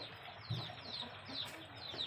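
Birds chirping in the background: a quick run of short, high, falling chirps, several a second.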